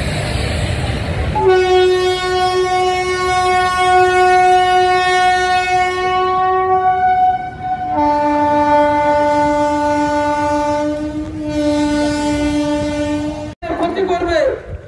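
Train horn sounding two long, steady blasts. The first starts about a second and a half in and holds for about six seconds; the second, lower in pitch, follows at once and runs for about five seconds before cutting off just before the end.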